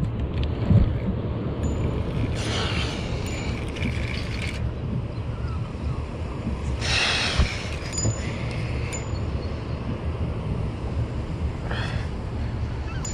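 Steady low rumble of wind on the microphone aboard a small boat, with water lapping at the hull. Two brief hissing rushes come through, a few seconds in and about halfway through.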